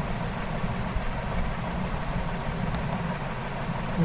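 Steady low background rumble with a few faint clicks of computer keyboard keys.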